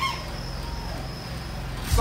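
Steady low electrical hum from a public-address sound system during a pause in amplified speech, with a faint high steady whine that fades out near the end.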